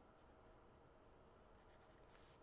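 Near silence: room tone, with faint stylus scratches and taps on a tablet screen near the end.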